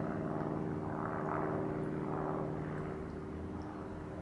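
Cello chord starting suddenly and ringing on as several steady notes at once, slowly fading.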